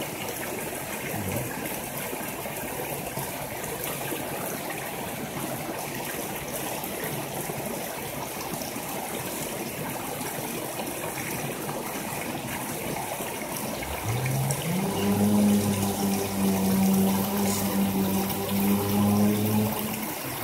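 Shallow mountain stream running steadily over rocks. Well past the middle a louder low hum comes in, rising briefly in pitch and then holding steady over the water.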